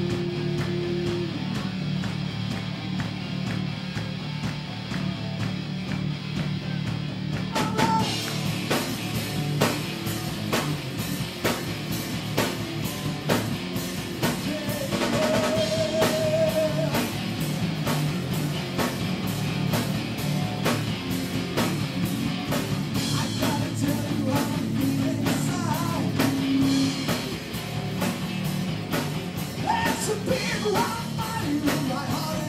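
A metal band playing live on stage. Electric guitars play alone at first, then the drums and cymbals come in with the full band about eight seconds in, and the playing stays loud and driving.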